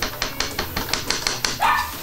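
A small dog barking at the door near the end, after a rapid run of light clicks or taps.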